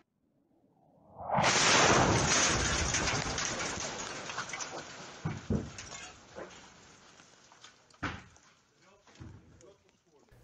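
An incoming shell exploding very close, a little over a second in: one sudden loud blast that dies away slowly over several seconds, followed by a few scattered sharp knocks. It is counter-battery fire landing on a mortar position.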